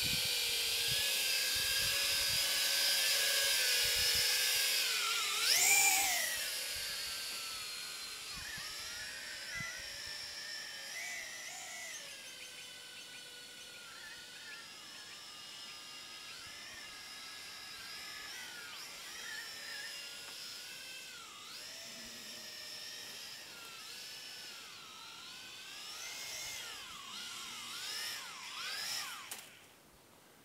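Small toy quadcopter's electric motors whining, several tones wavering up and down as the throttle changes. A loud rising surge comes about six seconds in, then the whine goes on fainter and unsteady before stopping abruptly just before the end.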